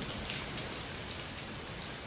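Plastic LEGO bricks being handled and pressed together, giving a few light, scattered clicks and taps.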